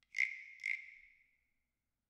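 Two high-pitched ringing percussion strikes about half a second apart, each dying away over about a second, in a percussion track.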